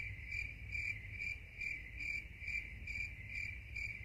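Crickets chirping in a high, even trill that pulses about three times a second, over a low hum. It fills the pause after the question and cuts in and out sharply with it, the comic 'crickets' sound effect for an awkward silence.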